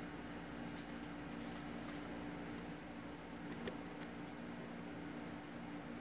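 Quiet room tone: a steady low hum with a couple of faint small clicks about three and a half and four seconds in.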